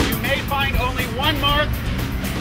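Raised, high-pitched voices of people in a group calling and talking, over a steady low rumble of background noise.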